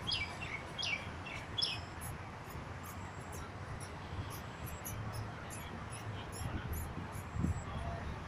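A quick run of about six high chirps, each sliding down in pitch, in the first two seconds, over a steady low rumble.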